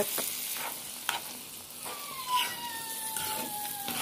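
Ackee frying in a pan with a steady sizzle while a metal fork stirs it, giving a few sharp clicks against the pan. In the second half a faint thin tone glides slowly downward.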